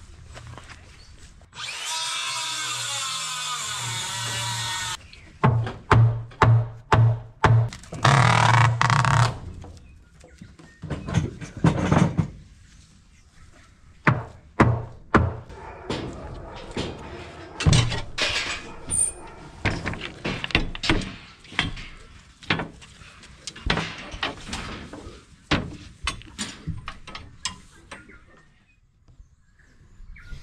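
A power drill runs for about three seconds, then a quick series of knocks, followed by irregular clanks and clicks of metal gate panels and fittings being put in place.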